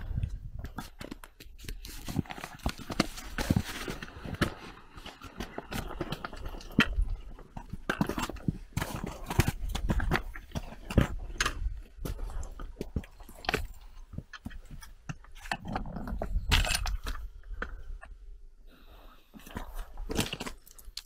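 Irregular crunching and clinking of footsteps on loose rock scree, with a steady low rumble underneath.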